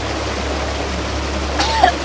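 Waterfall rushing steadily, and near the end a boy coughs and splutters once after a swig of strong liquor, choking on the drink.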